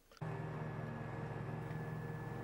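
Stiga Park Pro 540 IX ride-on mower's engine running steadily at constant speed, with a thin high whine above it. It cuts in suddenly about a fifth of a second in.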